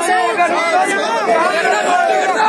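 A crowd of men shouting and talking over one another, several raised voices at once.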